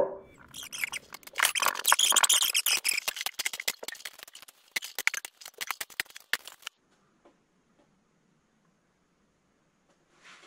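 Fiberglass go bars being pulled out of a go-bar deck and knocking against one another and the deck as they are released from the braces of a glued acoustic guitar top: a rapid, irregular clatter of clicks and rattles that stops abruptly about two-thirds of the way in.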